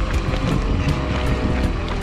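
Rocky Mountain Instinct full-suspension mountain bike riding over a rough forest singletrack: steady wind rumble on the camera microphone, with the bike rattling and clicking over the bumpy ground.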